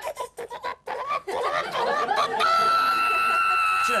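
A woman's vocal trumpet impression: some sputtering and giggling, then a single high, squeaky note held steady for about a second and a half. It is a poor imitation of a trumpet.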